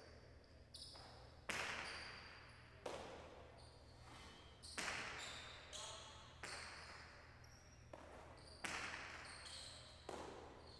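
Jai alai rally: the hard pelota cracking off the fronton walls and being caught and flung from wicker cestas, each hit echoing through the large hall. About five loud hits come a second and a half to two seconds apart, with softer knocks and short high squeaks between them.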